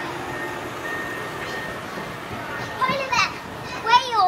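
Background chatter of visitors, with a young child's high-pitched voice calling out twice, about three seconds in and again at the end.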